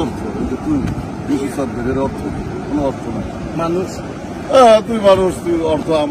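Men talking in conversation, in short bursts of speech, over a steady background rush of noise.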